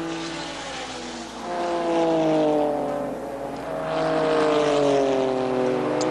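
Rothmans Porsche 956 racing car's turbocharged flat-six engine running at speed through corners; the engine note drops in pitch twice, from about a second and a half in and again from about four seconds in.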